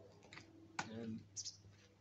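A man's voice saying one short word, with a few faint sharp clicks before and after it.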